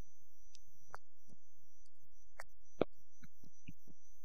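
A steady low hum, with faint scattered clicks and one sharper click about three quarters of the way through.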